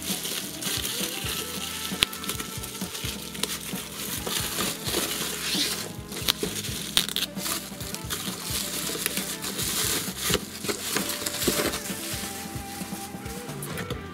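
Plastic bubble wrap crinkling and rustling as it is pulled off a boxed plastic model kit, with irregular crackles and clicks, over background music.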